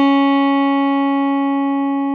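Open first string of an Ibanez QX54QM headless electric guitar, down-tuned to C sharp, ringing as one sustained note that slowly fades. The note is in tune, about one cent sharp: the open-string reference for checking intonation.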